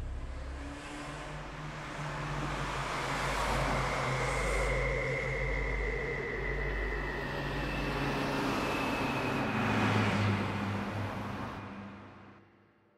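Road traffic: cars passing, the noise swelling through the middle and fading away near the end.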